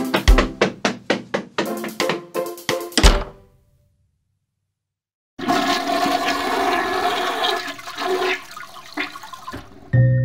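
A quick run of percussive music notes that stops about three seconds in; after a short silence, a toilet flushing sound effect with rushing water runs until near the end.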